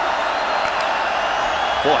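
Steady stadium crowd noise during a college football play. The commentator's voice comes in near the end.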